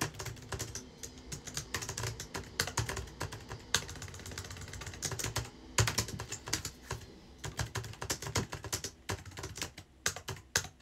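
Fast typing on a low-profile computer keyboard: dense runs of key clicks in uneven bursts, with a brief pause a little past halfway.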